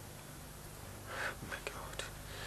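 Quiet pause with a steady low electrical hum and room tone. About a second in there is a faint breathy hiss, followed by a few faint clicks.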